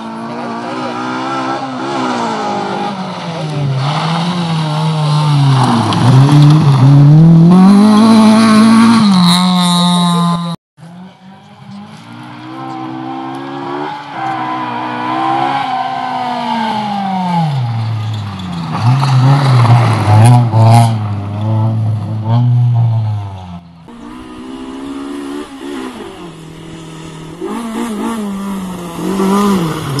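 Rally car engines revving hard on a gravel stage, the pitch climbing and dropping again and again with gear changes and lifts off the throttle. Three passes are joined by abrupt cuts, the loudest about six to nine seconds in.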